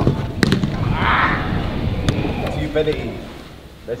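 A football kicked hard: a sharp thud right at the start, then a second thud about half a second later, with children's voices around it.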